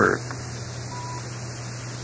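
A pause in the narration: the recording's steady background hiss and low hum, with one brief faint beep about a second in.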